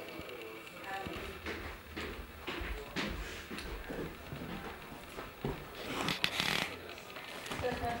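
Indistinct talking in a small room, too faint or muffled to make out, with short knocks and a rustling burst about six seconds in.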